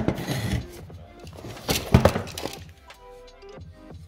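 Background music, with knocks and rattles as a metal-cased power supply is slid out of its cardboard box and handled on a wooden table; the loudest knock comes about two seconds in.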